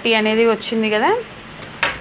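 A woman speaking for about the first second, then a single sharp tap near the end.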